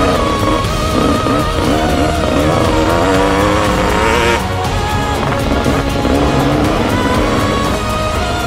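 Music mixed with a dirt bike engine revving up and down as it rides a rough track. A rising rush of noise cuts off about halfway through.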